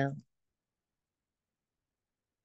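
The last syllable of a spoken farewell, falling in pitch and ending in the first quarter second, then dead silence.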